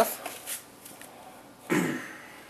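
Quiet room sound with faint rustling, and a short burst of a person's voice near the end.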